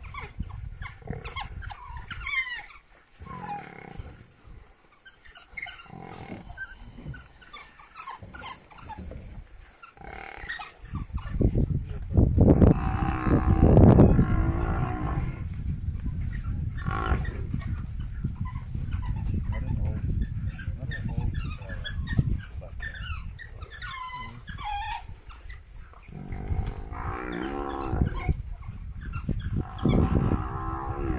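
A pack of African wild dogs twittering with many short, high chirps while they bite an adult African buffalo cow, which bellows loudly in distress about twelve seconds in and again near the end.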